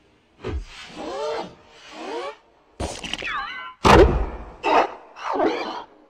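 Electronically distorted logo sound effects: a string of short, warped bursts separated by brief gaps. Around three seconds in comes a sliding, stepped pitch. The loudest is a sudden hit about four seconds in.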